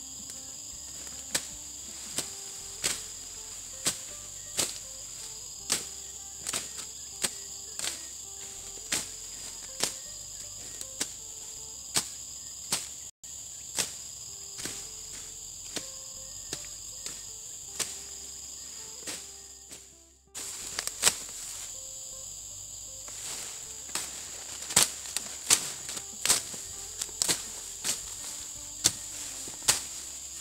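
Parang (machete) chopping through weeds and small saplings: sharp strikes about once a second, coming quicker near the end, over a steady high chorus of insects.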